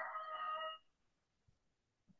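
A person's voice holding one drawn-out vowel at a steady pitch, cutting off under a second in; then near silence.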